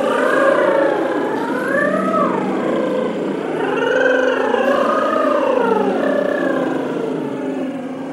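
A group of singers vocalizing together in wavy pitch glides (vocal sirens), several voices sliding up and down at once. They start together and taper off near the end.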